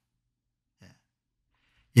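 A pause in a man's speech: near silence apart from one short, faint breath just under a second in. His speech starts again at the very end.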